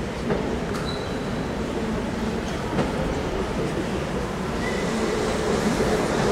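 Steady rumbling ambience of an indoor ice rink, with a few faint clicks.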